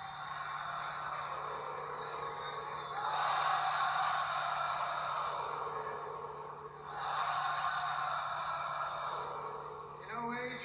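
Arena crowd cheering on the wrestling broadcast. It swells about three seconds in and again about seven seconds in, over a steady low hum.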